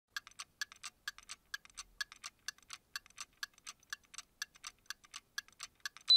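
Quiet, rapid mechanical ticking of a watch or clock movement, several ticks a second with a stronger tick about every half second.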